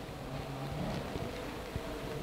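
Faint steady low hum over a low rumbling background noise, with no speech.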